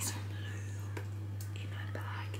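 Faint whispering and breathy vocal sounds from a person, over a steady low hum.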